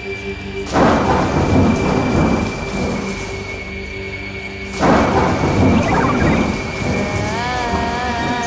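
Thunder sound effects over a sustained eerie drone in a stage act's soundtrack: two rolling claps about four seconds apart, each fading slowly. Near the end a wavering, warbling melody comes in.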